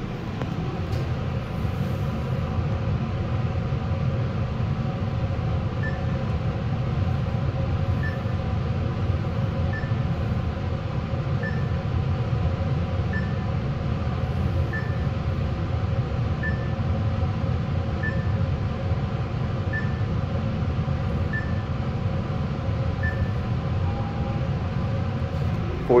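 Mitsubishi traction elevator car travelling upward, with a steady low ride hum and rumble throughout. A short high beep sounds about every second and a half from a few seconds in, once for each floor the car passes.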